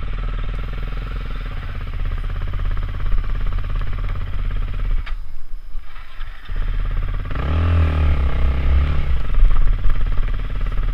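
KTM supermoto motorcycle engine running at low speed, heard from the rider's helmet. The throttle eases off for a moment midway, then the revs rise and fall with a blip near the end.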